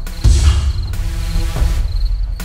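Crickets chirping in a steady pulsing trill over background music with a low rumbling drone that swells about a quarter second in.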